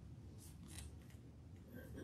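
Near silence: room tone with a steady low hum and a few faint, brief rustles.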